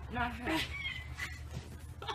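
Meow-like whining cries. One rises and then falls, beginning just after the start. A thinner, higher one follows.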